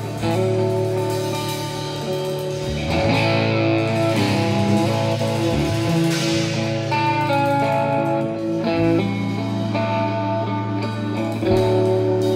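Live band playing an instrumental passage: electric guitars holding sustained notes over a steady bass line, with keyboards and drums.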